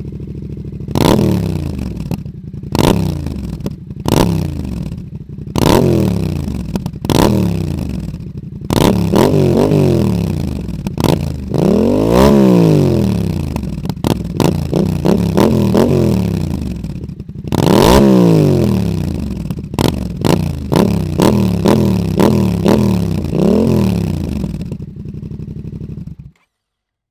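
Yamaha MT-07's parallel-twin engine revved from idle in repeated short throttle blips through a Zard exhaust with its dB-killer removed, each rev rising and falling quickly back to idle. There are a couple of longer, higher revs, about twelve and eighteen seconds in.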